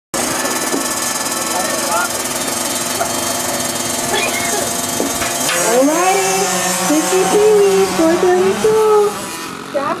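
Several small youth dirt-bike engines running together at the starting gate. About halfway through, one engine revs up in a rising whine and then holds at high revs, wavering, as the bikes pull away.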